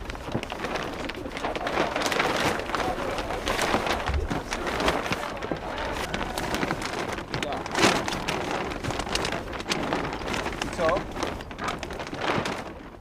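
Sailcloth crackling and rustling as a sail is bundled up and dragged about on a small yacht's deck, in irregular crackles with a louder one about eight seconds in.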